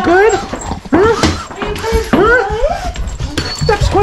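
Dogs whining and yowling in a run of rising-and-falling cries, an excited greeting, with knocks and rustling as they jostle against the camera.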